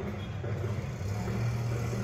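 Steady low rumble of city traffic, a continuous hum with no distinct events.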